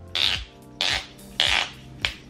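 An eyeliner making three short noisy sounds about half a second apart, as it is worked before application. The owner treats the sound as a sign that the cheap liner is running out. Faint background music plays underneath.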